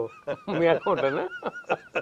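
Two men laughing together in short, repeated bursts.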